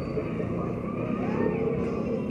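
Busy street traffic: motorcycles and cars running past in a steady mixed drone.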